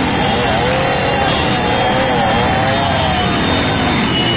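Motorcycle engines running among a crowd of men's voices shouting and talking, a loud, steady mix with no break.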